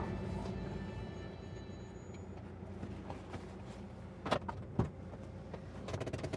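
Car running, heard from inside the cabin as a low steady rumble, with two short sharp clicks about four and a half seconds in.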